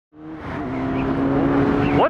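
Motorcycle engine running steadily while riding, with wind and road noise, fading in from silence at the start.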